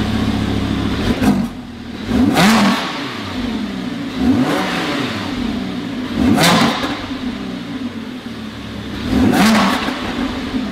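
Lamborghini Huracán's 5.2-litre V10 on its stock exhaust, revved while parked: the idle is broken by about five quick throttle blips, each rising sharply and falling back toward idle.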